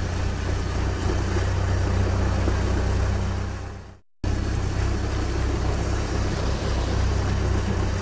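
Steady, low vehicle-engine rumble as a sound effect for a cartoon forklift, fading out about four seconds in. After a brief moment of silence a similar engine rumble starts again for the next vehicle, a tractor pulling a trailer.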